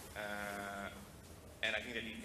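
A man's drawn-out hesitation sound, a steady held "aah" lasting most of a second, followed by the spoken word "and" near the end.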